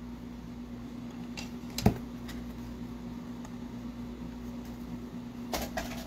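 Small clicks of art supplies being handled on a table: one sharp click about two seconds in and a few softer taps near the end, over a steady low room hum.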